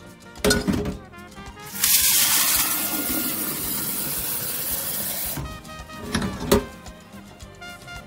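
Tap water running hard into a glass pitcher for about three and a half seconds, starting about two seconds in, filling it over powdered drink mix. Knocks come in the first second, and a sharp knock about six and a half seconds in.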